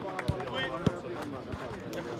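Football being kicked and touched on artificial turf: about four short, sharp thuds, the loudest a little under a second in, over background voices of players and spectators.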